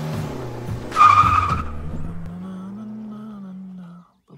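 Car sound effect: an engine running, with a short, loud tyre squeal about a second in, then a steady engine note that slowly fades.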